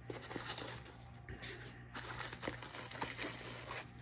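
Plastic bubble wrap crinkling and rustling in the hands as a small boxed figurine is lifted out and unwrapped. It makes soft, irregular crackles.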